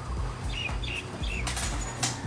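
A small bird chirping four times in quick succession, short high notes, over soft background music.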